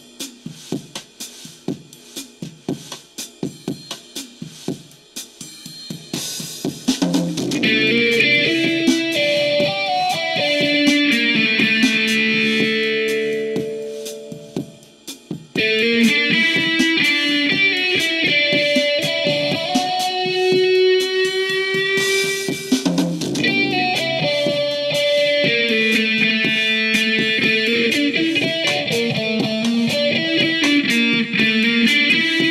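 Blues-rock music. For the first six seconds a drum beat plays alone; then an electric guitar comes in with sustained lead notes and bends over it, drops away briefly about halfway, and comes back in.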